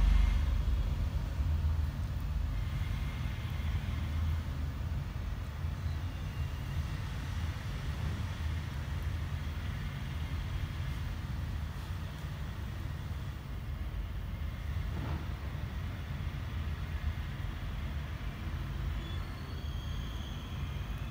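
A steady low background rumble, loudest in the first second or two, then holding at an even level.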